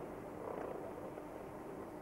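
Steady rumble of a car's engine and tyres heard from inside the moving car's cabin, swelling slightly about half a second in.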